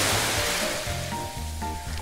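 A rushing, surf-like noise, loudest at the start and fading away over the first second and a half, laid under a title card as a transition effect. Light background music with a low bass line plays underneath.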